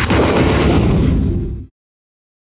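Closing logo sound effect for a TV show. It is a sudden, loud burst of dense noise with a deep low end that lasts under two seconds and cuts off abruptly into silence.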